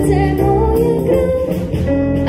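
Live ensemble of violins, viola, cello, clarinet, piano, double bass and drum kit playing an upbeat 1950s Polish popular song, with steady, full-band sound.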